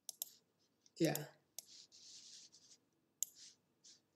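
Several quiet, sharp clicks from handling a computer while a line of code is being selected in a text editor, spread over a few seconds, with a faint soft hiss about two seconds in.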